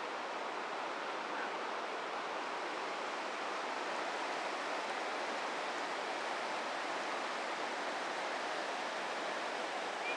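The McKenzie River rushing over shallow rapids: a steady, even wash of water noise.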